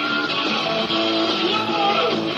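Live rock band playing, with electric guitar to the fore: held lead notes, some of them bent up and down, over bass and drums. The recording is dull, with no top end.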